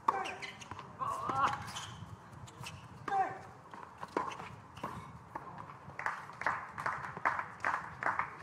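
A tennis rally: sharp racket-on-ball hits, the loudest right at the start, with a player's voice-like grunt or shout. In the last two seconds comes a quick series of short taps.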